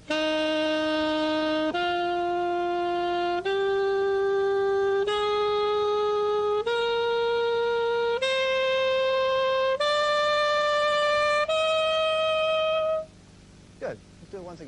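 Saxophone playing a C major scale upward over one octave: eight held, evenly spaced notes of about a second and a half each, stepping up in pitch and stopping about 13 seconds in.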